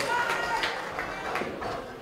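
Low background murmur of spectators' voices in a darts venue, fading slightly over the two seconds.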